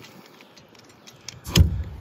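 Faint handling of metal hardware, then one sharp metal clunk about one and a half seconds in, as the awning's aluminium rail and channel bolt seat against the steel mounting bracket.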